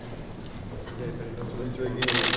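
Indistinct murmur of conversation among people standing close together in a large room, with no clear words, over a steady low room hum.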